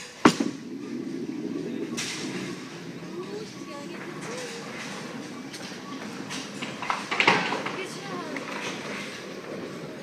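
A small duckpin bowling ball lands on the wooden lane with a loud thud and rolls away with a low, steady rumble, knocking once about two seconds in. About seven seconds in there is a clatter, typical of the ball striking the pins.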